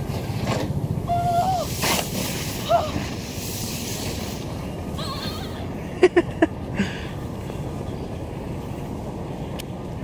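Outdoor ambience on a sledding hill: a steady low rumble with distant voices calling out about one and three seconds in, and a few sharp knocks about six seconds in.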